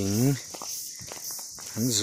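A man's voice talking briefly at the start and again near the end, with a few footsteps in the pause between and a steady high-pitched insect drone behind.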